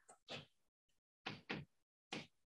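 Near silence broken by a few faint, short chalk strokes on a blackboard, two of them close together about a second and a half in.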